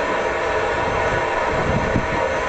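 Jet car's turbine engine running steadily: an even rushing noise with a steady whine of several tones.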